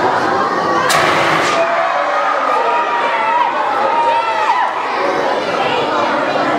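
A crowd of children shouting and cheering together, many voices overlapping, with a short burst of noise about a second in.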